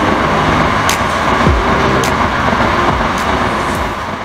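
A Shinkansen bullet train rushing past, a steady loud roar, laid over an electronic track with a deep falling bass hit and a sharp tick about once a second.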